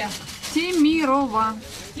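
A person's voice, fairly high-pitched, speaking or calling in a wavering tone; the words are not made out.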